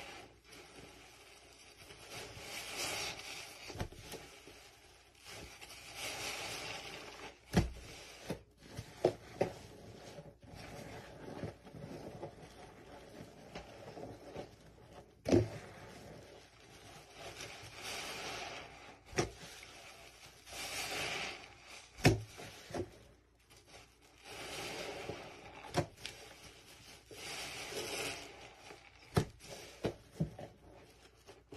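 Laundry soap paste being scraped and worked by hand, in swelling scraping passes a second or two long, with a sharp tap every several seconds.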